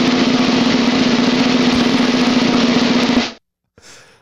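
Snare drum roll, steady and even, cutting off suddenly about three and a half seconds in.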